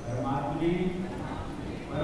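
A man's voice speaking into a microphone, reading aloud from a book.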